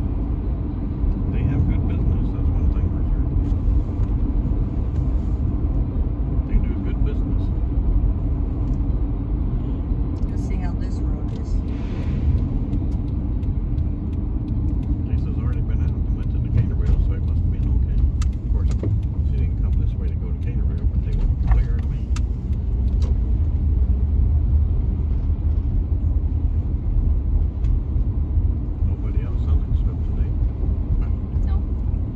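Steady low road rumble of a car being driven, engine and tyre noise heard from inside the cabin.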